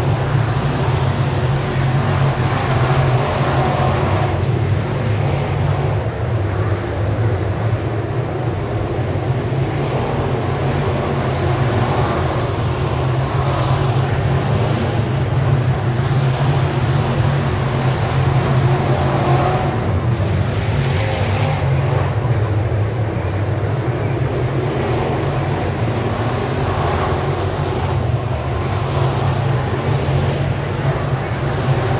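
Several dirt late model race cars racing laps around a small dirt oval, their V8 engines running hard in a loud, steady, unbroken noise as the field circulates.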